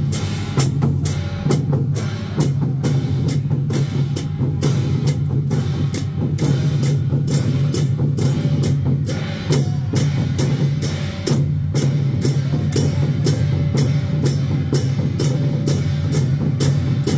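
Taiwanese temple-procession percussion: a drum troupe playing a continuous drum beat with pairs of hand cymbals crashed together in a steady, even rhythm.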